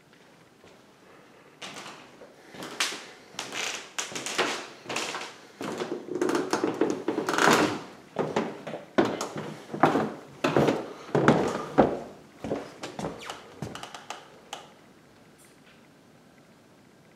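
An irregular run of knocks and thuds on wood, starting about a second and a half in, thickest in the middle and thinning out before stopping near the end.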